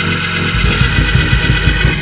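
Church praise music: organ chords held over a fast, even low beat that starts about half a second in.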